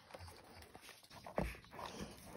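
Dog nosing around a plastic slow-feeder bowl after the last kibble, soft and quiet, with one dull bump about two-thirds of the way in.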